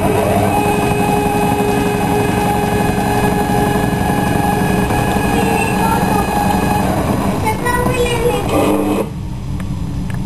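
Stepper motors of a homemade CNC milling machine whining as the axes move, several steady tones together. Around seven to eight seconds in the tones shift in pitch, then they stop about nine seconds in, leaving a lower steady hum.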